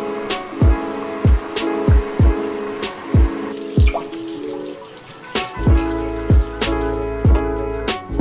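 Background music with a steady, regular beat, its bass line growing much heavier about two-thirds of the way through. A running kitchen tap is faintly heard under it around the middle.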